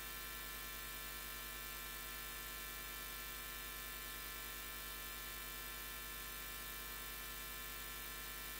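Steady electrical mains hum with a faint hiss, made of many even tones that do not change.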